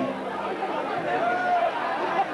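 Audience chatter and mixed voices at a rock concert between songs, with a few drawn-out wavering tones.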